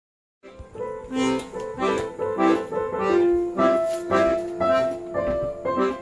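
Piano accordion playing a tune in a regular beat, held notes changing from chord to chord; it starts about half a second in.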